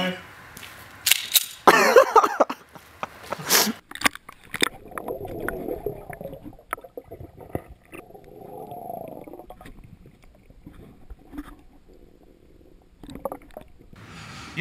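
Short bursts of voices in the first few seconds, then soft sloshing and gurgling of pool water in two slow swells as a person moves in the water.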